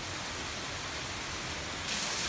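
Very heavy rain falling steadily as an even hiss on a flooded brick path and garden plants. Near the end the hiss turns brighter and louder, with water pouring off a roof edge.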